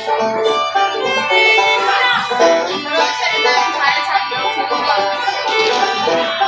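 Fiddle and banjo playing an instrumental tune together, the banjo picked and the fiddle bowed, without singing.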